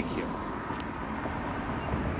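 Steady outdoor background noise with a low rumble, the kind of open-air ambience that distant road traffic gives, after a single spoken word at the start.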